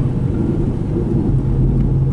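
Low, steady rumble of a car driving, heard from inside the cabin, with a steady low hum setting in about one and a half seconds in.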